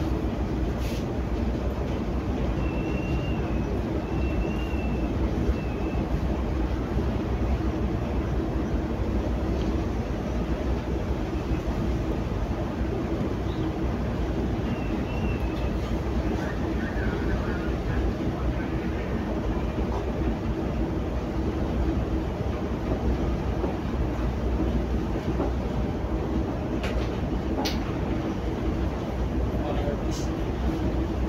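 Steady low rumble with a constant mid-pitched hum running unchanged: ship's machinery and wind heard on board a general cargo ship in heavy seas.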